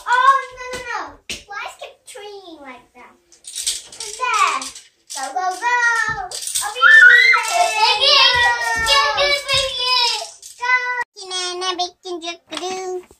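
Young children's high-pitched voices: wordless squeals, shouts and sing-song vocalising, loudest in the middle of the stretch.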